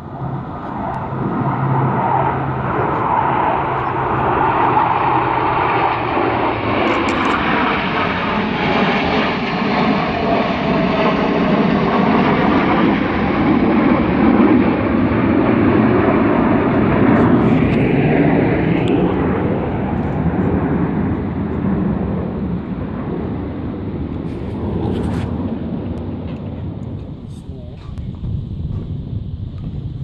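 Blue Angels F/A-18 jets flying over in formation: a loud, continuous jet roar that swells through the middle with a falling pitch as they pass, then slowly eases off.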